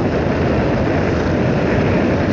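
Steady rush of wind and road noise on the microphone of a motorcycle cruising along a paved road, with no clear engine note.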